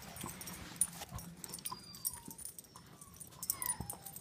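German shepherd puppy whimpering softly: a few short, high, falling whines, with light clicks and rustling as it settles down with its ball.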